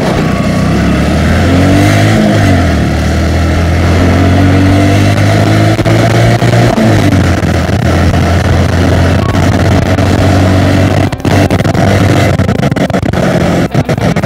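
Motorcycle engine running under way, with wind noise over the microphone. The engine note dips and climbs again twice. Near the end the sound breaks off in a few brief dropouts.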